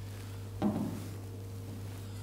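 Steady low hum of the room, with one short soft knock just over half a second in.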